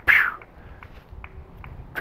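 A man's brief breathy exhale at the start, then quiet background with a few faint ticks.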